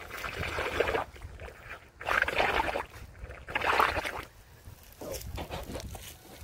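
A child blowing into the neck of a big water-filled rubber balloon held overhead: three long, breathy puffs of about a second each, with short pauses between them.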